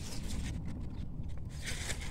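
Faint rustling and scraping of grapevine leaves pushed aside by hand, over a steady low rumble.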